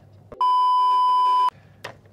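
A single steady electronic bleep, about a second long, starting and stopping abruptly, followed by a brief click near the end.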